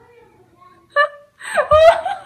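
A person's high, wavering wail, starting about a second and a half in, after a short high yelp about a second in.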